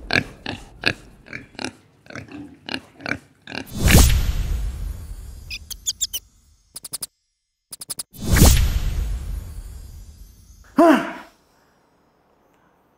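Pig grunting sound effect: a quick series of short grunts and oinks. Then a loud boom about four seconds in and another about eight and a half seconds in, each fading out, with a run of fast clicks between them.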